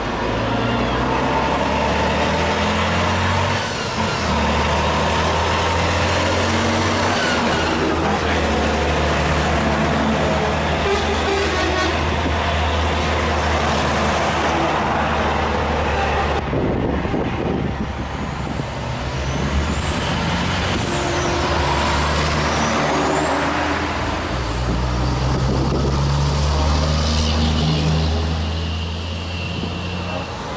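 Heavy diesel trucks driving past in a slow convoy, their engines running loud and deep, the engine note shifting up and down in pitch. A little past the middle, a high whistling tone rises and falls three times.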